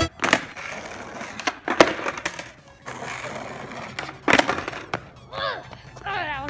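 Skateboard deck and wheels hitting and clattering on asphalt during a kickflip attempt, as a series of sharp knocks with the two loudest about two seconds and four seconds in. A short voice is heard near the end.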